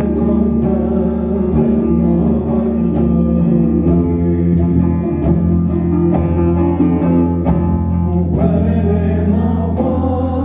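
Two long-necked lutes (saz) plucked together in a live folk performance with a voice singing over them, heard through the hall's amplification.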